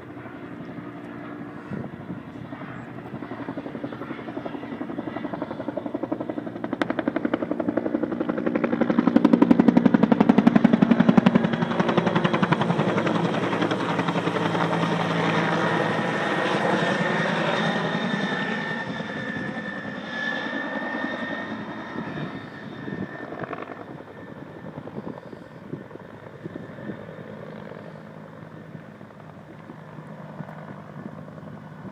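Firefighting helicopter flying in close and passing overhead, the rapid beat of its rotor blades and its engine whine growing loudest about ten seconds in, then fading as it moves away.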